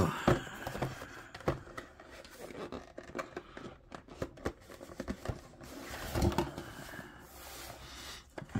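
A small cardboard retail box being handled and opened by hand: irregular taps, scrapes and rustles of cardboard and paper.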